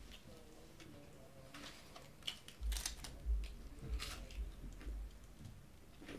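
A person chewing food with the mouth closed: quiet wet mouth clicks and smacks at irregular moments, with a few soft low bumps in the middle.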